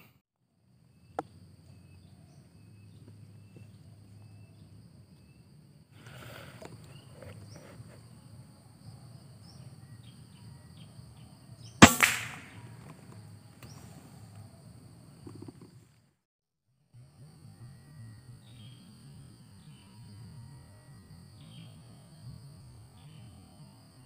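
A single air-rifle shot, a sharp crack with a brief ringing tail, about twelve seconds in, over a steady high-pitched drone.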